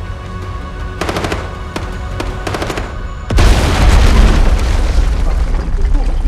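Bursts of rapid automatic gunfire over a music score, followed about halfway through by a sudden loud boom that carries on as a low rumble for a couple of seconds.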